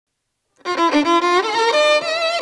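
Lead violin of a Hungarian Gypsy band (the primás) comes in about half a second in, playing an ornamented melody with slides and vibrato. It is the instrumental opening of a magyarnóta song.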